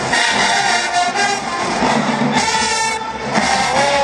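Marching band brass section with sousaphones and drums playing loudly. A long note is held in the second half.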